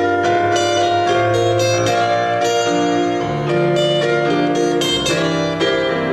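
Acoustic guitar fingerpicked in an instrumental passage of a folk song, several notes a second ringing over one another.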